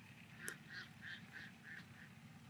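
A bird calling five times in quick, evenly spaced notes, about three a second, just after a sharp click. A faint low hum runs underneath.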